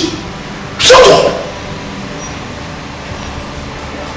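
A single short, loud vocal call about a second in, followed by a steady low hiss of room noise.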